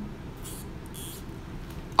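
An acoustic guitar string, plucked just before, rings and dies away at the start. Then the guitar is handled quietly at the headstock, with only faint soft rustles as a tuning peg is worked.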